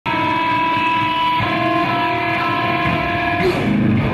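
A heavy metal band playing live: distorted electric guitars holding sustained notes that change pitch a few times, with the sound thickening just before the end.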